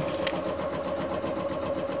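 A steady mechanical hum with a fast, even ticking running through it.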